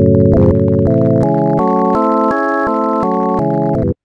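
LMMS TripleOscillator synth playing a stacked minor-chord arpeggio set to up and down: organ-like chords step upward about three a second for roughly two seconds, then step back down. The sound cuts off suddenly near the end.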